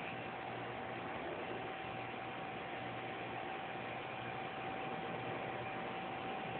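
Steady background hiss with a faint, steady high hum running through it; no distinct event.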